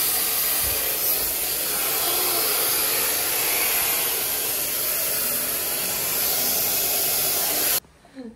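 Hand-held hair dryer blowing steadily close by as hair is dried; it cuts off suddenly near the end.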